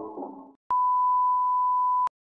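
Background music fading out, then after a short gap a single steady electronic beep: one pure tone held for about a second and a half that cuts off suddenly.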